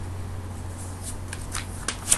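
A few light, sharp clicks in the second half, over a steady low hum.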